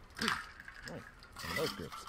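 A faint voice: three short, quiet vocal sounds with pauses between them.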